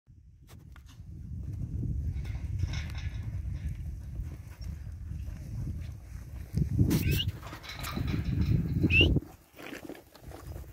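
Cattle and a cattle dog moving in a dirt yard: a low rumble that builds over the first second or two and cuts off suddenly just after nine seconds, with two short, high, sliding animal calls about seven and nine seconds in.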